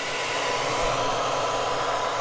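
Handheld hair dryer running steadily, a rush of air with a faint steady whine, blown into a refrigerator's frozen-up ice maker to thaw it.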